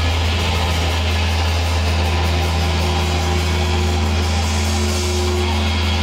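Sustained electric guitar and amplifier drone from a rock band's stage rig, loud and steady with no drumming, as a song rings out. A higher steady tone, like held guitar feedback, comes in about two seconds in.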